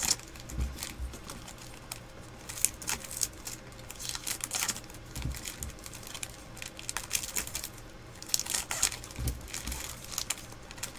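Foil-lined Topps Stadium Club card-pack wrappers crinkling and tearing as packs are opened and handled, in irregular crackles with a few soft thumps.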